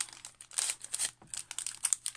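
Small clear plastic bag crinkling in the fingers as a bobbin of see-through beading thread is worked out of it, a run of irregular crackly rustles.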